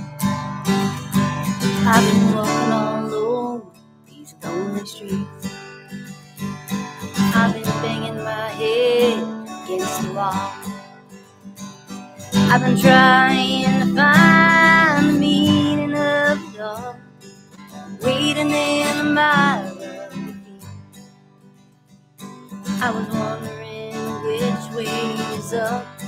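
A woman singing with her own strummed acoustic guitar, in sung phrases separated by short stretches of guitar alone.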